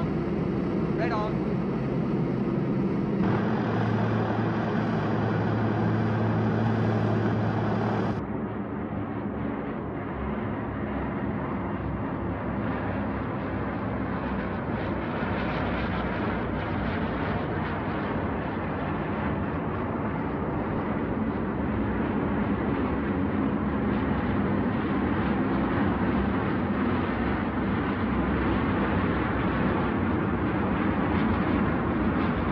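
Propeller drone of a large formation of twin-engine C-47 Dakota transport planes, their radial piston engines running steadily and loudly. About eight seconds in the sound changes from a steadier hum to a rougher, fuller drone.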